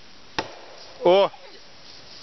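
A single sharp knock, then about a second in a short call that rises and falls in pitch, the loudest sound here.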